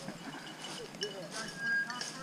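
Faint, light metallic clinking in short high ringing notes, with faint indistinct voices.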